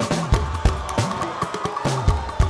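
A live band playing Fuji music with no vocal line: dense hand drums and percussion with a bass pulse and a single held high note over them.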